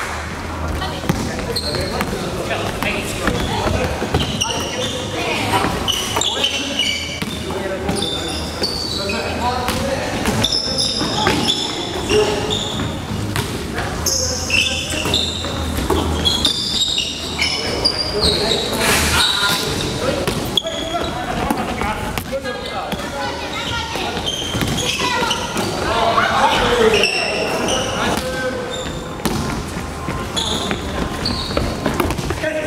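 Basketball being played on a wooden gym floor: the ball bouncing, sneakers squeaking in many short high chirps, and players' voices calling out, all echoing in the large hall.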